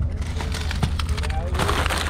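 Plastic-wrapped food and packaging rustling and crinkling as it is handled and loaded into a mesh tote bag, growing denser and louder about one and a half seconds in, over a steady low rumble.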